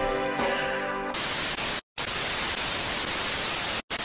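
Intro music cut off about a second in by loud, even television-style static hiss, which drops out to silence twice for an instant.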